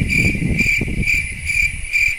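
Cricket chirping in an even pulsing rhythm, about two chirps a second, with a low rumble under the first part.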